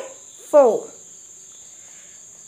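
Steady high-pitched insect sound in the background, like crickets, with one short spoken word about half a second in.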